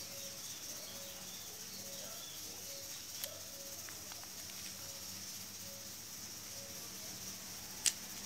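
Quiet handling of small metal injection-pump parts, with a light click about three seconds in and another near the end. Under it runs a steady faint hiss and a faint short peep that repeats roughly every two-thirds of a second.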